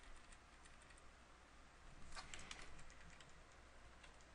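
Faint clicks of a computer keyboard, with a quick run of several keystrokes about two seconds in, over near-silent room tone.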